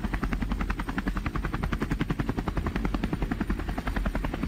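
Helicopter rotor chopping rapidly and steadily, about seven beats a second, with a low rumble underneath.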